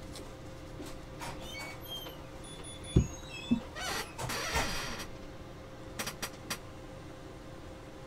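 Trading cards being handled on a table: a few faint high squeaks, a sharp thump about three seconds in as cards are set down, a second of rustling as the stack is sorted, then three light taps.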